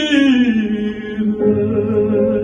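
A male classical singer holds a note with vibrato, then slides down to a lower held note. A grand piano comes in under the voice about halfway through with low sustained chords.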